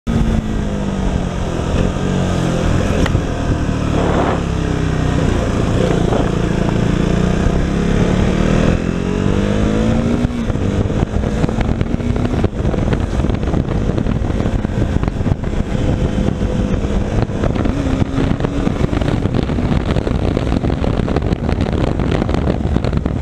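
Single-cylinder engine of a KTM Duke motorcycle heard from the rider's seat: it drops in pitch as the bike slows at first, climbs steadily as it accelerates up to about halfway through, then settles to a steady cruise. Wind buffets the microphone throughout.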